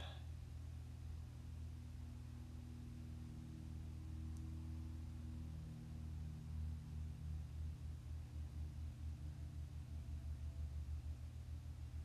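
A low, steady hum of room tone. About halfway through it begins to throb rapidly and unevenly.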